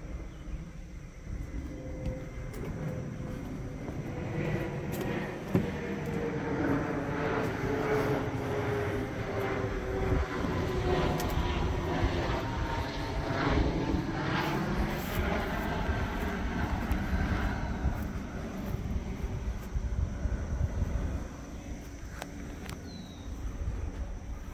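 An airplane passing over, its engine drone growing louder toward the middle and slowly falling in pitch, then fading away.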